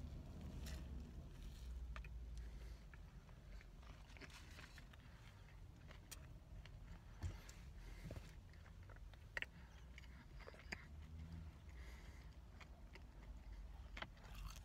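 A person faintly chewing a mouthful of bacon, egg and cheese McGriddle sandwich, with a few soft mouth clicks, over a low steady rumble.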